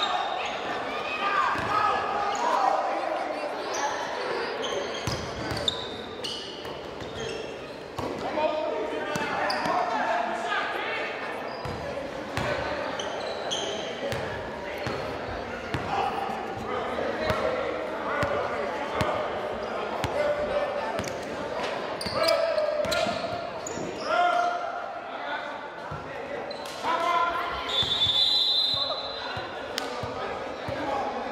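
Basketball game in a large, echoing gym: a basketball bouncing repeatedly on the hardwood floor, with players' and spectators' voices calling out and a few short high squeaks.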